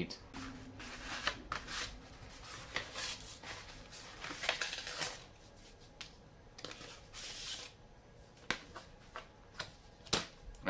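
Packaging of a pack of vinyl decals being opened and the decal sheets handled: irregular rustling and crinkling with many sharp clicks, busiest in the first half.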